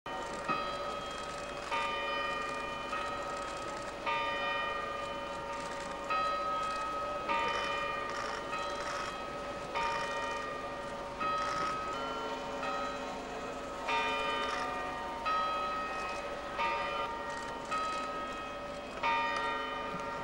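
Church bells ringing a slow peal, about one stroke every second or so. Each stroke rings on and fades into the next, and the pitch varies from stroke to stroke.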